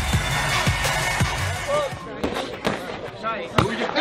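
Music and voices over crowd noise, then, in the second half, several sharp, separate smacks of gloved punches landing.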